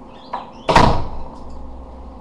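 A door shutting off-camera with a loud bang, a lighter knock just before it.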